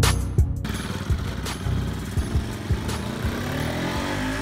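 Bajaj Pulsar RS 200's single-cylinder 200 cc engine running and gaining revs, its pitch rising toward the end, under background music with a steady beat.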